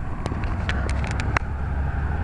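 Low, steady rumble of street traffic, with several short light clicks scattered through it.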